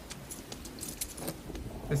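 Film soundtrack of a cartoon rainstorm: steady rain with a patter of small, high metallic clicks and jingles, and a brief faint voice near the end.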